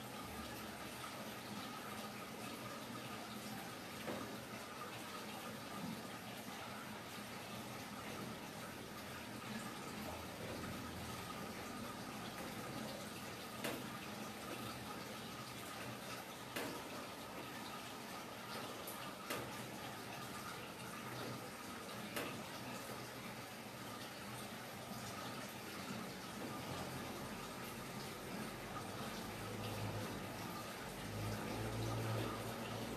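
Steady running water, an even rushing noise with a faint thin steady tone through it and a few soft clicks here and there.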